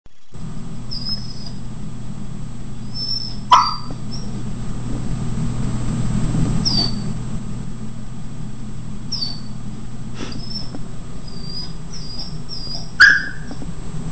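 Samoyed puppy giving two single loud barks, about three and a half seconds in and again near the end, with short high-pitched whines between them: alert barking at something heard outside the door. A steady low hum runs underneath.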